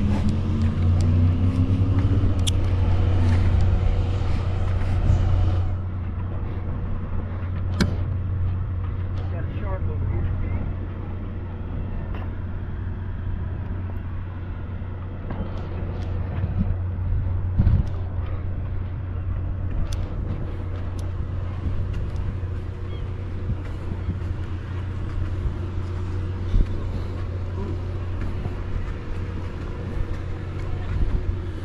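A steady low engine hum runs throughout. In the first few seconds an engine rises in pitch as it speeds up. A few sharp knocks stand out here and there.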